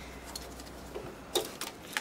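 A few light clicks and ticks from hands handling wires and terminals inside an opened variable frequency drive, the sharpest about one and a half seconds in, over a faint steady background.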